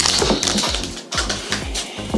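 Foil booster pack wrapper crinkling as it is torn open, over background music with a steady beat.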